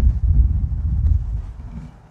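Wind buffeting the microphone: an uneven low rumble that swells and fades, easing off near the end.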